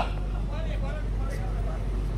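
Faint, indistinct voices, a man's speech and the murmur of a gathering, over a steady low hum.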